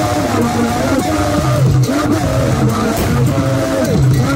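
A woman singing through a microphone and loudspeakers, her amplified voice loud and holding long, gliding notes, over Adowa drumming for the dance.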